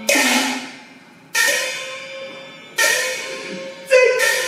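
Cantonese opera percussion accompaniment: cymbal crashes, four strikes about a second and a half apart, each ringing and dying away.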